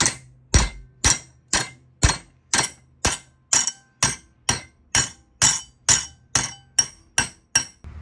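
Hammer striking a flat metal bar clamped in a bench vise, bending it into an L bracket. There are about two blows a second at a steady rate, each a sharp metallic strike with a short ring.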